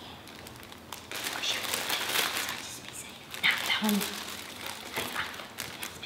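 Plastic lettuce bags crinkling as they are handled, in irregular bursts.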